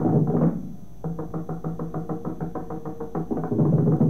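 Mridangam playing fast runs of strokes in a Carnatic percussion passage, easing off about half a second in and then resuming with a quick, even pattern.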